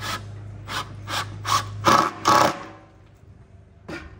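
Cordless drill boring into a solid-wood butcher-block countertop, the bit biting in a series of short, loud surges before it stops about two and a half seconds in.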